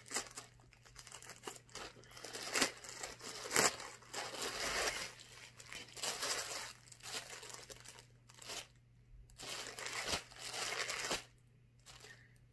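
Plastic packaging crinkling and tearing as a mail-order parcel is opened by hand, in irregular bursts with two sharp snaps about two and a half and three and a half seconds in.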